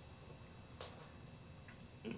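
Near silence: room tone, with one faint click a little under halfway through and a weaker one near the end.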